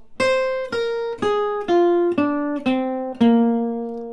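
Archtop acoustic guitar playing a slow single-note phrase, seven picked notes about two a second, descending through a half-diminished arpeggio over B flat. It ends on the B flat root, which is held and left ringing near the end.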